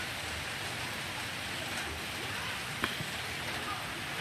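Steady hiss of light rain falling on wet ground, with one sharp knock about three seconds in.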